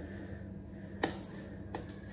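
Two light plastic clicks, about a second in and again shortly after, from a protein tub and scoop being handled, over a low steady hum.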